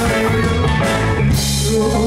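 Live band playing with drum kit and electric guitar; about two-thirds of the way through, the drumming stops and a chord is held.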